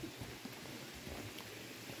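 Faint footsteps and light trekking-pole taps on a dirt trail strewn with dry leaves, a few soft ticks over a low, even background.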